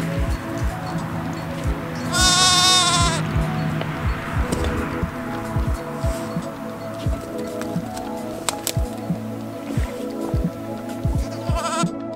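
A Swaledale sheep bleats once, loud and wavering, for about a second starting about two seconds in, over background music with a steady beat.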